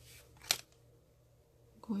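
One brief, sharp scrape-click of nail-stamping tools being handled on the work mat about half a second in, then quiet until a woman begins speaking at the very end.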